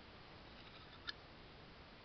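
A single short, sharp click about halfway through, otherwise near silence: a titanium frame-lock folding knife's blade being closed, snapping shut.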